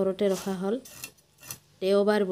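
A few short clinks and knocks about a second in, between stretches of a woman's talk, as a rohu fish is cut on a boti blade over a stainless steel plate.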